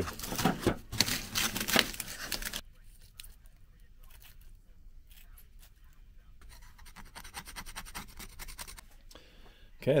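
Cling film and foil tape crinkling and tearing as they are peeled off a cast urethane rubber bush, loud for the first two and a half seconds. Then quieter rustling and scissor snips as the leftover film is trimmed away.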